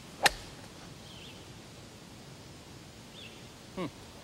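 A golf club striking a ball off grass: one sharp crack of the swing about a quarter second in.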